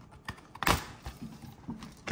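Laptop bottom cover's vertical-style retaining clips snapping free as the panel is pried off along its back edge: a few small clicks and one sharp snap about two-thirds of a second in.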